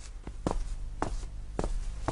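Footsteps of people walking at an even pace: three distinct steps about half a second apart.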